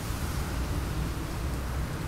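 Wind on an outdoor microphone: a steady rushing hiss over an uneven low rumble.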